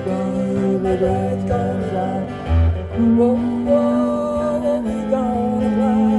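Instrumental break on two guitars: a lap-played slide guitar carries the melody in held, gliding notes over a strummed acoustic guitar.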